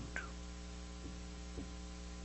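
Steady electrical mains hum with a stack of overtones, low but plain, with a faint hiss behind it.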